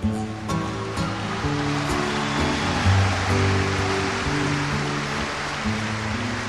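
Classical guitar playing slow, held notes under a dense, steady wash of audience applause after a spoken line in a live show.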